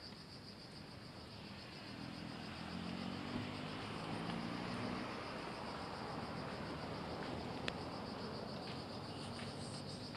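Insects trilling steadily in a high, rapidly pulsing chorus over a broad background hiss. A low hum rises from about two seconds in and fades by five, and there is one sharp click near the end.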